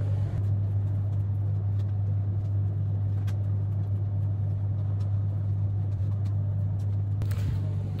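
Commercial tumble dryers running: a steady low hum with an even whirr over it and a few faint ticks.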